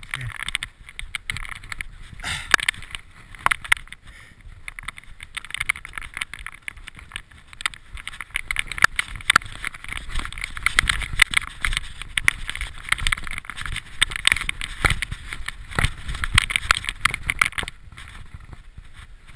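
Mountain bike clattering down a rocky forest trail: a constant rattle of the bike with frequent sharp knocks from the tyres hitting rocks, over a low rumble. It gets louder and busier about halfway through.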